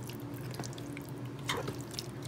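A fork stirring and spreading a wet, creamy pasta and egg mixture in a multicooker's nonstick pot, making soft wet clicks, with one sharper click about one and a half seconds in. A faint steady hum runs underneath.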